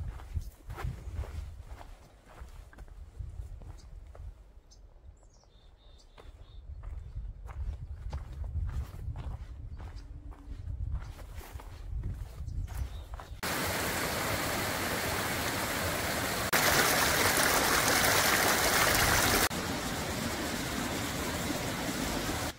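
Footsteps on a rocky trail with a low rumble of wind on the microphone, then, a little past halfway, a small mountain stream rushing over granite boulders: a steady rush that steps up louder for a few seconds and back down.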